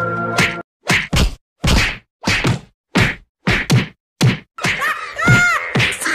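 A rapid series of comic whack sound effects: about eight short, sharp hits over roughly four seconds, cut apart by dead silence. Near the end comes a denser stretch with wavering tones.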